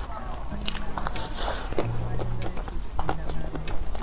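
Close-miked mouth sounds of someone chewing a soft macaron cake with a chocolate shell: wet smacks and short clicks, over low steady background tones.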